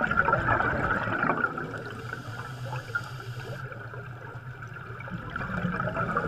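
Steady bubbling and gurgling of air bubbles rising underwater.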